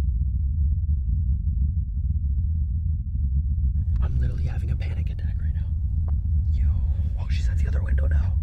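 Steady low rumble inside a parked car's cabin, with no other sound for the first few seconds; from about four seconds in, faint muffled voices talk over it.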